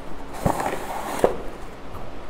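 Cardboard packaging scraping and rustling as a toy's inner box slides out of its printed outer box, with two light knocks, about half a second and a second and a quarter in.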